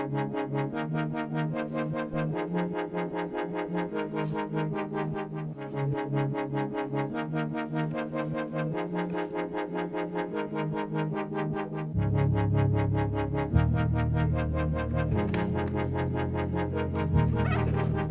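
Background electronic music with synthesizer notes in a steady, regular pulse; a heavier bass line comes in about two-thirds of the way through.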